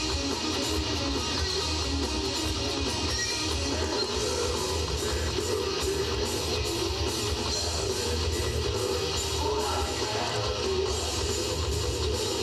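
A live metal band playing full out: distorted electric guitars and bass over a steadily pounding drum kit, loud and continuous.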